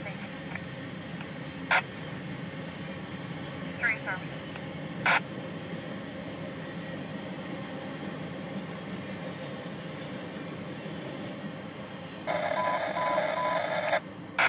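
Freight train cars rolling steadily past, heard from inside a car, with a few short high squeaks. Near the end a louder sustained sound with several even tones and a repeated beep cuts in.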